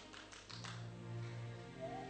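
Soft background music under a pause: a held low note comes in about half a second in. A few light taps or clicks sound in the first second.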